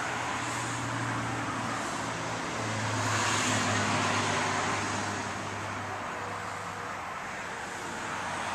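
Motor-vehicle traffic noise, swelling louder about three seconds in and easing off again, over a low steady hum.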